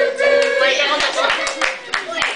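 Scattered hand clapping from a small group, with several voices calling out over it. One voice holds a long note through the first second, and the clapping picks up just before that note ends.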